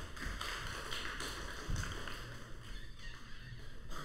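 Small audience applauding after a song ends, an even patter of handclaps, with a low thump near the middle.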